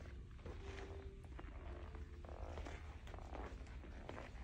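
Faint low, steady rumble of room noise, with a faint held tone during the first couple of seconds and light scattered ticks.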